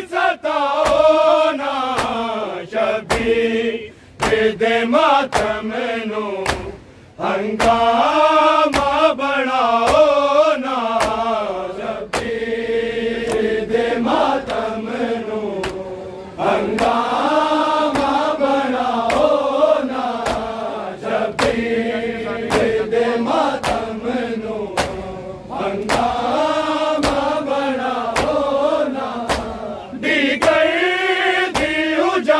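Punjabi noha, a mourning lament, chanted by male voices, over the sharp, rhythmic slaps of a crowd of men beating their chests in matam.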